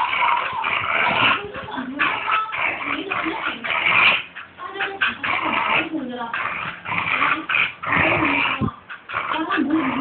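A corgi puppy whining and growling in play as it jumps and snaps at a person's legs, with voices in the background.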